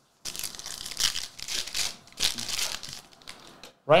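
A basketball trading-card pack being torn open, its wrapper ripping and crinkling in a run of rustling bursts for about three and a half seconds.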